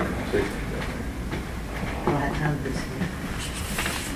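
Steady low hum of a large meeting hall, with faint, indistinct murmured talk.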